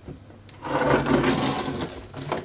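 Metal front panel being turned over and slid across a wooden tabletop: a rough scraping rub that starts about half a second in and lasts a little over a second.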